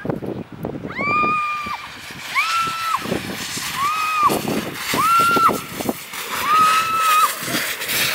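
A woman screaming as she rides a snow tube down a steep snow slide: about six held, high-pitched cries, each under a second long and roughly a second apart, over a steady rushing noise.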